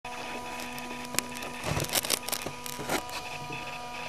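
Clicks and knocks of handling close to the onboard camera's microphone, several in a cluster in the middle, over a steady electrical hum.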